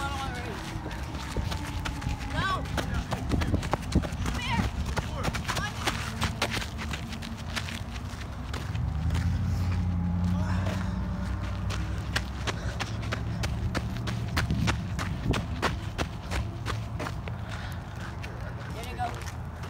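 Quick, repeated footfalls of people running on the ground, with faint distant voices calling, over a low rumble.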